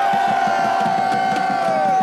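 Protest crowd cheering and shouting "yeah" in answer to a speech. One man's long, steady-pitched shout is loudest, with a few fainter held voices under it.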